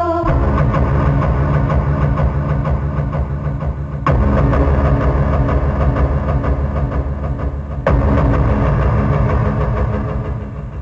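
A motor vehicle engine running steadily with a low rumble. The sound jumps abruptly twice, about four and eight seconds in.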